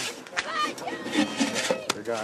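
The last strokes of a bow saw cutting through a log taper off under voices and a laugh. A single sharp knock comes near the end.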